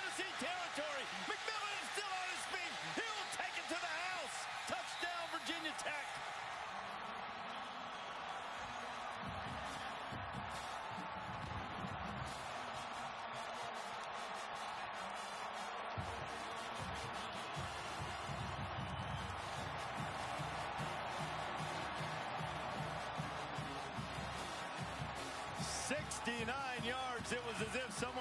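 Huge stadium crowd cheering a long touchdown run, a dense steady roar that swells and stays up, with voices over it at the start and again near the end.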